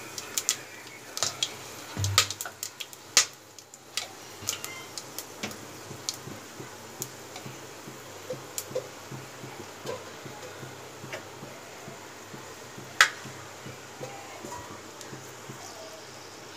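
Whole spices (cumin seeds, peppercorns, cardamom, cloves, cinnamon and bay leaf) crackling in hot oil and vegetable ghee in an aluminium pot: scattered sharp pops and ticks at irregular intervals, with one louder pop about thirteen seconds in. This is the tempering stage, the spices crackling in the hot fat.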